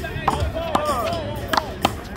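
Handball rally: the ball smacked by hand and striking the concrete wall, four sharp smacks with the last two close together and loudest.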